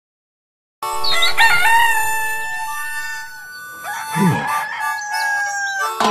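A rooster crowing, a wavering call over a held musical chord, followed by a short low falling sound about four seconds in and more sustained tones.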